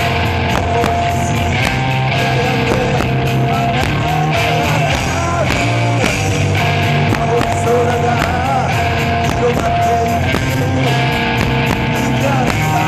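Rock band playing live through a PA: two electric guitars and a drum kit, with a steady beat of cymbal and drum hits under sustained guitar tones.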